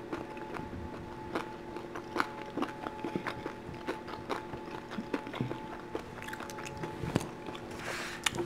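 Close-miked chewing of a deep-fried shrimp dumpling: many small, irregular clicking mouth sounds. A faint steady hum with a few held tones lies underneath.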